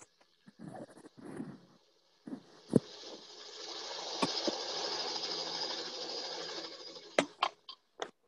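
A helicopter sling-load video's soundtrack, picked up through headphones pressed against a computer microphone, so it sounds muffled and hissy. A smooth hiss with a faint low hum swells up and fades away. Handling thumps and sharp clicks from the headset being moved against the mic come before it and again near the end.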